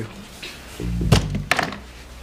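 A dull thud about a second in, followed by a second, sharper knock, over background music.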